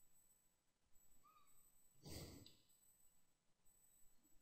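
Near silence with one faint breath, close to the microphone, about two seconds in.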